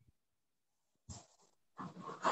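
Near silence, broken by a short breath about a second in and another starting near the end.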